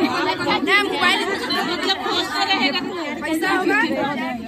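Many people talking at once: loud, overlapping chatter of a crowd of voices.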